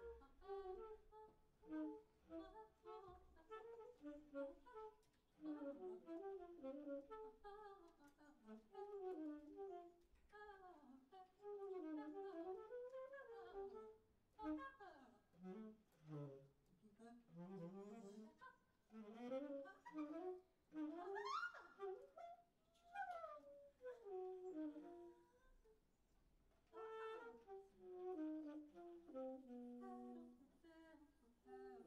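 Large ensemble of saxophones, brass and woodwinds playing quietly in a conducted free improvisation: many short overlapping phrases with sliding notes, one line gliding up high about two-thirds through, with brief lulls between.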